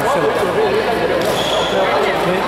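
Conversation close by, with a few light knocks from badminton play on the courts underneath.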